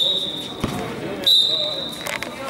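Referee's whistle blown in two steady, high-pitched blasts, the first fading about half a second in and the second starting about a second and a quarter in. Between them, a basketball bounces once on the court floor.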